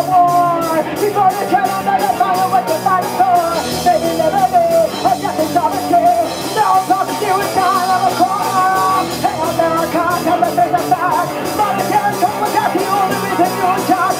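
Punk rock band playing live with distorted electric guitars, bass and drums. A woman sings at the start, and the cymbal hits drop out for a few seconds mid-way before coming back.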